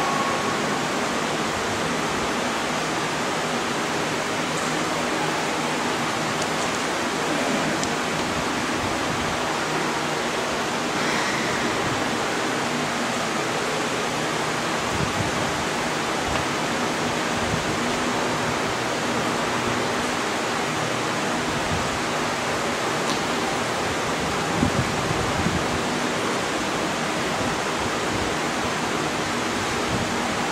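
Steady, even hiss of background noise with no voices, with a few faint knocks about halfway through and near the end.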